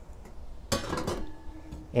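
A cooking pot set down inside a Sun Oven's chamber with a single clink about two-thirds of a second in, followed by a faint ringing.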